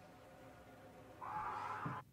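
Screaming on a TV episode's soundtrack comes in about a second in and holds steady, after a quiet start.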